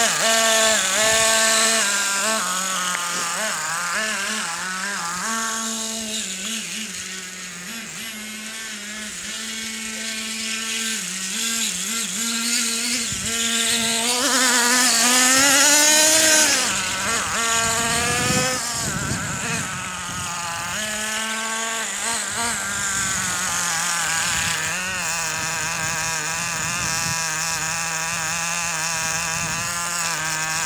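Traxxas T-Maxx RC monster truck's two-stroke nitro glow engine, revving up and down in a high, buzzing whine as the truck drives. It is loudest about halfway through as the truck passes close, then settles to a steady idle for the last third.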